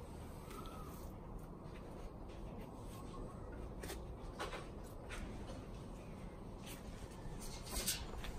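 Quiet outdoor ambience: a low steady rumble with a few faint, short clicks and rustles scattered through it.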